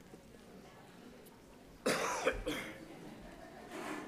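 A person coughs once, sharply, about two seconds in, against quiet room sound, with a fainter breathy sound near the end.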